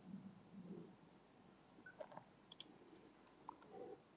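Near silence: room tone with a few faint, short clicks, a pair about two and a half seconds in and one more a second later.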